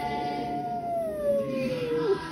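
Boston terrier howling along with the TV: one long howl, slowly falling in pitch, that stops near the end.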